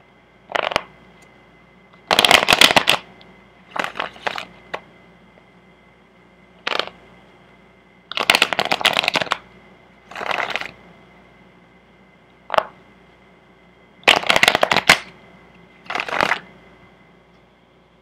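A deck of tarot cards being shuffled by hand in about nine separate bursts, some a brief snap and some about a second long, with short pauses between them.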